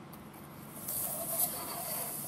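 Pencil lead scratching across paper as a straight line is drawn against a steel ruler, a steady dry hiss starting about a second in.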